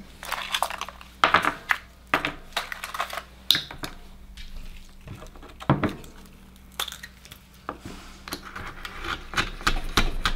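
Akoya oyster shells knocking and clattering on a wooden cutting board as they are set down and handled, then a steel knife scraping and clicking against a shell as it is worked in to pry it open. Irregular sharp clicks and knocks with short scrapes between.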